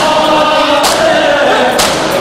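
A group of men chanting a noha together while beating their chests in unison (matam), the hand slaps landing in time about once a second over the sustained voices.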